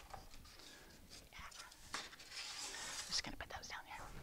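Faint rustling and soft ticks of paper being handled and picked up from a table, in a small room.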